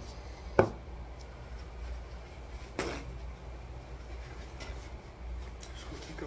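A sharp knock about half a second in and a softer one near three seconds, with a few faint ticks later, over a low steady hum.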